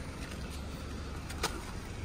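BMW E90 318i's four-cylinder engine idling, a steady low hum, with one short click about one and a half seconds in.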